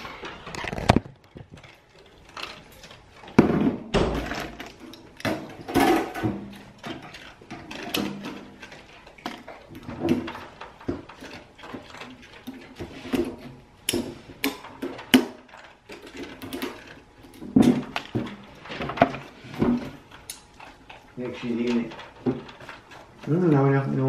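Indistinct talking, with scattered sharp clicks and knocks from a metal wire basket being handled.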